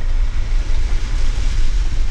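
Jeep Wrangler JL driving slowly on a dirt trail, heard from inside the cab: a steady low rumble of engine and drivetrain under an even hiss of tyre and wind noise.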